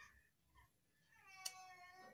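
A cat meowing once, faintly, a drawn-out cry of about a second in the second half, with a sharp click in the middle of it.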